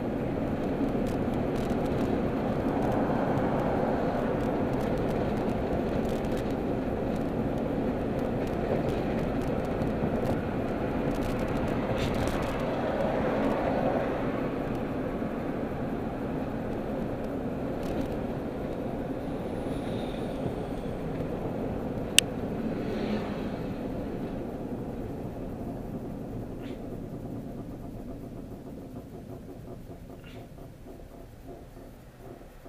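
Steady road and engine noise heard inside a moving car's cabin, dying down over the last few seconds as the car slows for traffic ahead. A single sharp click sounds a little past two-thirds of the way through.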